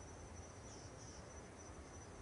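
Faint, steady high chirring of crickets in night-time background ambience.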